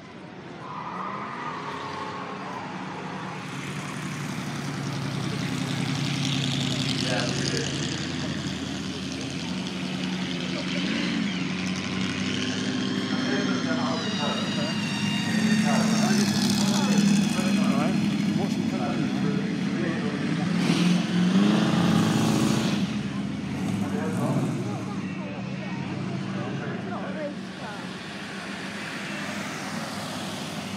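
A supercharged Chevrolet El Camino's engine drives up the hill and passes close by. The engine builds steadily, is loudest about halfway through with a rising high whine as the car goes past, then fades as it moves away.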